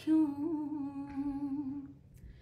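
A woman's unaccompanied singing voice holds one long note with a slight waver, drifting gently down in pitch and fading out near the end.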